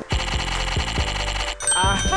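Background music with a steady beat, then a bright, bell-like cartoon 'idea' chime sound effect comes in near the end, with high ringing tones and tones that bend up and down in pitch.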